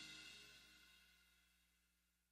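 The last chord of a live worship band, cymbals among it, dying away steadily into near silence.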